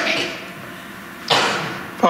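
A man breathing into a close microphone: two breaths about a second and a half apart.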